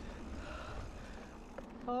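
Mountain bike rolling along a leaf-covered dirt singletrack: a steady low rumble of tyres on the trail, with a few faint ticks of the bike rattling over bumps.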